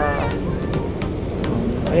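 Steady low drone of a ferry's engines during docking, with a few light ticks over it and faint music in the background.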